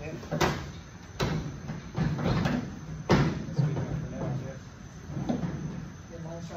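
A series of sharp knocks and thumps on the old steel pickup cab as a person shifts about inside it, four clear knocks in the first three seconds and softer ones after, with some voice between them.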